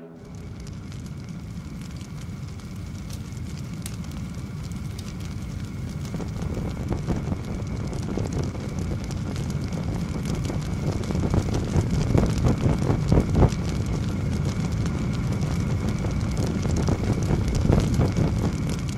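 A large fire burning: a low, noisy rumble with scattered crackles that slowly grows louder, with the sharpest crackles a little past the middle.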